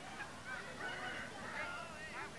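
Several children's voices calling and shouting over each other in short, high, overlapping calls.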